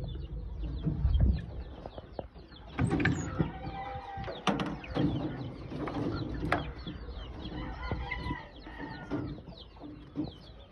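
Several sharp clicks and rattles from a wire-mesh aviary door and its nail latch being handled, starting about three seconds in. Birds call throughout.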